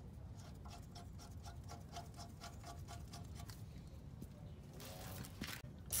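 Faint hand work on a coilover's top mount bolts: a run of light, regular clicks, about five a second, that stops partway through, then a brief scrape near the end.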